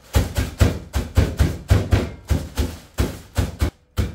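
A fist pounding biscuits in a plastic bag on a kitchen counter: a quick run of thuds, about five a second, with the biscuits crunching as they break, stopping shortly before the end with one last blow.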